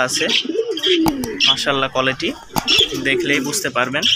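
Domestic pigeons cooing in a cage, several low coos one after another.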